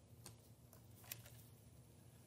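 Near silence: room tone with a few faint clicks, the clearest about a second in.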